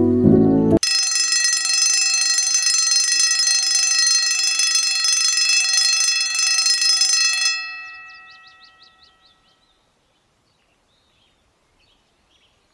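Timer alarm bell ringing steadily for about seven seconds, then stopping and ringing out over a couple of seconds. Soft piano music cuts off abruptly just before the alarm starts.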